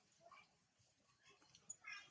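Faint, short high-pitched squeal from an infant long-tailed macaque near the end, with a fainter squeak about a quarter second in.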